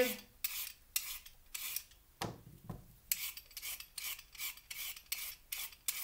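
Vegetable peeler scraping down a raw carrot in quick, repeated strokes, about two a second, peeling off the skin.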